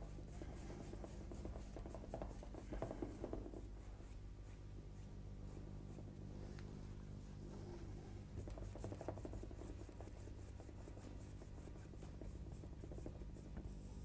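Paintbrush scrubbing and blending oil paint on a canvas: faint rubbing brush strokes, loudest about three seconds in and again about nine seconds in, over a steady low hum.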